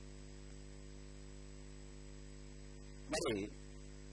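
Steady electrical mains hum in the recording: a low constant hum with several fixed higher tones above it and a faint hiss. About three seconds in, a man's voice makes one short sound.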